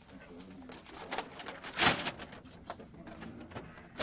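Rustling and handling noises as shoes and clothes are taken off, with one louder thump about two seconds in.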